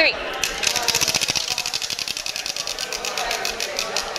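Spinning prize wheel clicking against its pegs: rapid ticks that gradually slow and fade as the wheel coasts to a stop.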